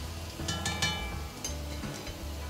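Background music with a few plucked-string notes, over a faint sizzle of sliced garlic and chilies frying in olive oil in the pan.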